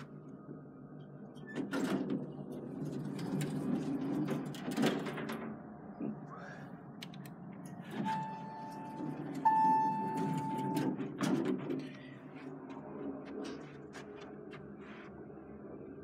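Montgomery elevator car doors sliding open and, near the end, closing, with rumbling and clicks from the door mechanism. Between the two door movements a steady electronic tone sounds in two back-to-back parts, each a little over a second long, the second slightly higher and louder.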